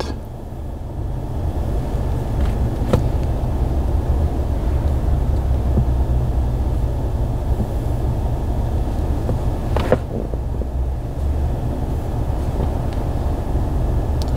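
Steady low rumble of a car, heard from inside its cabin, with a faint click about 3 seconds in and another about 10 seconds in.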